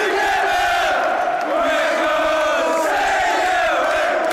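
Large football stadium crowd chanting together, a mass of voices holding a sung chant with no break.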